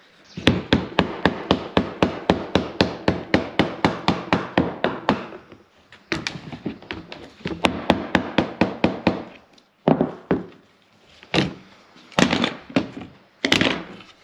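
Rubber mallet tapping black T-trim into the routed groove along the edge of a lightweight plywood cupboard door. Quick, even blows come at about four a second for some five seconds, then a second run after a short pause, then a few slower, separate blows near the end.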